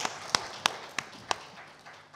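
Hand clapping: five sharp claps about three a second, over faint scattered applause that fades away.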